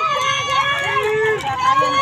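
Many spectators shouting and cheering at once, high-pitched calls overlapping throughout.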